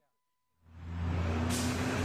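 Half a second of silence, then road traffic fades in: a steady low hum with a broader hiss of tyres and engines rising about a second and a half in.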